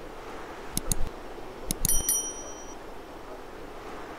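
Subscribe-button animation sound effect: two quick mouse clicks about a second in, then more clicks and a short high bell ding near the two-second mark, over a steady hiss.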